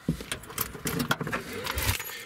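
Keys on a key ring jangling and clicking against the trim as a key's emergency blade pushes the Nissan Murano liftgate's manual release lever, a run of small clicks and rattles. The liftgate latch lets go, with a low thump near the end.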